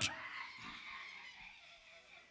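Faint crowd noise from a congregation in a large, reverberant hall, dying away about halfway through.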